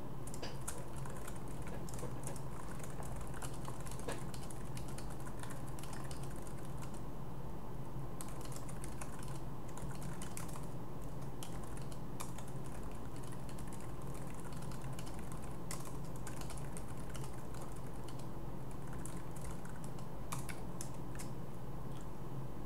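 Typing on a computer keyboard: irregular runs of key clicks, with a steady low hum underneath.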